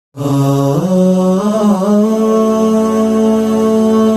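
A solo voice chanting in long, held notes, stepping up in pitch just under a second in and turning through short melodic ornaments, in the manner of an Islamic vocal intro.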